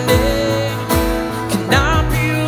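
Live worship song: a strummed acoustic guitar and keyboard chords under a male voice that holds a long note at the start, then slides into the next phrase near the end. A steady low beat lands about once a second.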